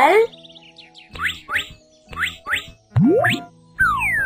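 Cartoon sound effects over light children's background music: two pairs of short rising chirps, then a longer rising boing-like glide about three seconds in and a quick falling glide near the end.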